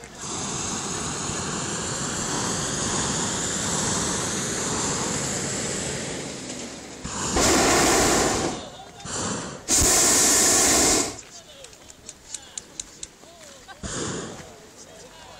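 Propane burners of hot-air balloons firing. A long steady burn runs for about the first six seconds, then two louder blasts of about a second and a half each come about two seconds apart, near the middle.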